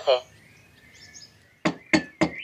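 The last syllable of a Timekettle Fluentalk T1 Mini translator's synthesized Spanish voice, then a faint hush, then two sharp knocks about a second and a half in.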